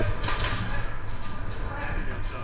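Busy indoor airsoft field heard in a large echoing hall: distant players' voices with a few faint sharp clicks of airsoft gunfire, near the start and again near the end.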